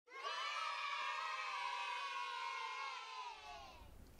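A crowd of children cheering and shouting together in one long cheer that starts suddenly and fades away near the end.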